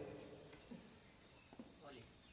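Near silence: room tone, with a few faint brief sounds.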